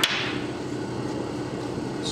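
A sharp clack of a part being set down on a steel workbench right at the start, with a short ringing tail, followed by a steady low background hum.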